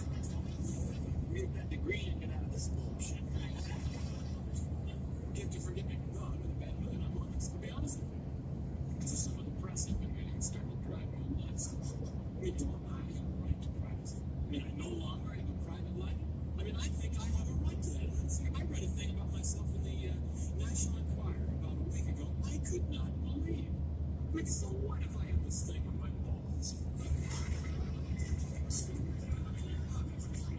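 Steady low road and engine rumble inside a car cabin at highway speed, with a car radio's talk and music playing faintly over it.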